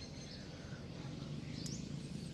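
Faint outdoor background with a single short, high bird chirp about one and a half seconds in.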